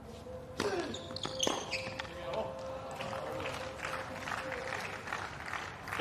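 Tennis ball struck by racket strings: a sharp pop about half a second in and another about a second later. Spectators then clap and call out.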